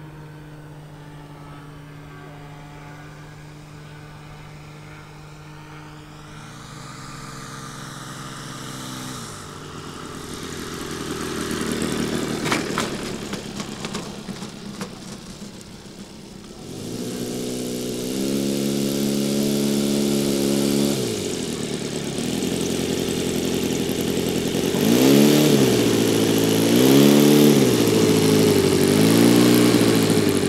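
Engine of a radio-controlled de Havilland Chipmunk scale model, first running steadily on approach, then swelling and gliding in pitch. A stretch of rushing noise with a few sharp knocks follows as it lands and rolls on the grass. The engine then runs up again and rises and falls in pitch in repeated blips of throttle as it taxis up close, loudest near the end.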